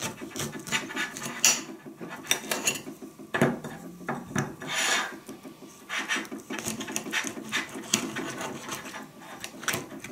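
An orange being cut and pulled apart by hand on a ceramic saucer: irregular rasping and rubbing of the peel, with small clicks of knife and fruit against the plate and one longer scrape about halfway through.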